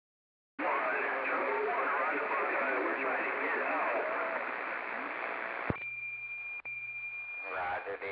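CB radio receiving a distant station: a voice comes through heavy static, then cuts off with a click as the transmission ends. A steady high tone follows for about two seconds, broken once.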